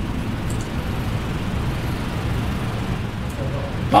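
Steady low rumble of room background noise, with no one speaking.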